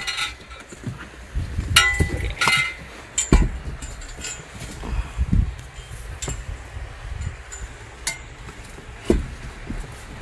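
The metal frame of a folding table clinking and clanking as it is pulled out and its legs are unfolded. There is a cluster of sharp metal knocks in the first few seconds and a few more later, over dull thumps from handling.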